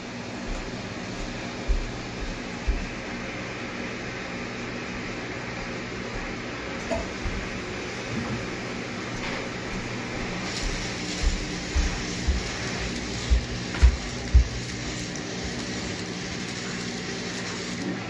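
VEX V5 Clawbot's drive motors and omni wheels turning the robot in place as its vision-sensor program tries to line up exactly on a target, over a steady hum. Irregular low thumps come more often in the second half.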